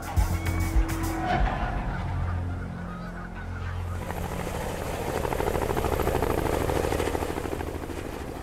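Canada goose honking, followed about halfway through by a helicopter's rotor beating with a fast, even chop.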